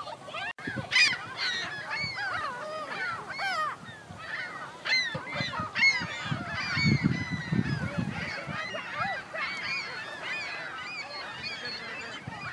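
Flock of gulls calling: many short, overlapping cries that rise and fall in pitch.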